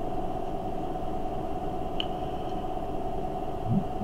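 Steady background hum and hiss with a constant tone in it, with one faint click about halfway through.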